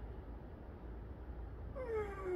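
A man's drawn-out sigh or groan begins near the end, sliding steadily down in pitch, from the strain of hanging upside down on the bars. A steady low rumble lies underneath throughout.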